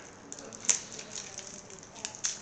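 A few faint, small clicks over quiet room noise, the sharpest about two-thirds of a second in.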